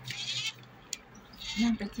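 Thin plastic wrapper crinkling in short bursts and small plastic clicks as a toy surprise box is handled, with a child's brief "yeah" near the end.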